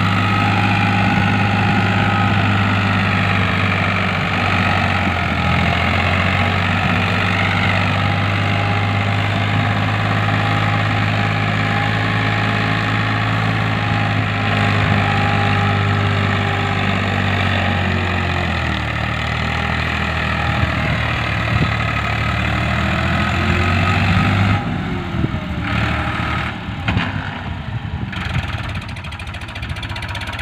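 Diesel engine of a Farmtrac Champion tractor running steadily while pulling a field implement. The note shifts slightly about two-thirds of the way in, and near the end it thins out and turns uneven, with a few bumps.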